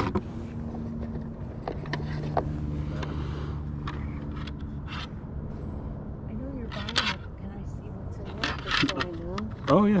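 A car engine running close by, a steady low hum that fades out about halfway through, with short clicks of hard plastic card cases being handled.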